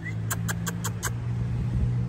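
Jeep's engine running at a slow crawl, a steady low hum, with a quick run of five sharp clicks in the first second.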